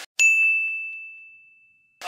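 A single bell-like ding sound effect: one clear high chime struck once, ringing down to nothing over about a second and a half, with no other sound behind it.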